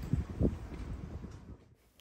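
Light wind rumbling on the microphone outdoors, uneven with a soft thump about half a second in, fading out near the end.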